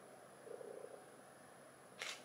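Near silence: room tone with a faint steady high whine, and a faint brief low sound about half a second in.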